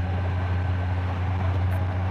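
2019 Honda Gold Wing Tour's flat-six engine running at a steady cruise, a constant low hum mixed with wind and road noise.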